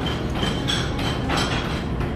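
A quick run of about four light metallic clinks, like dishes or serving utensils, over a steady background din of a busy dining room.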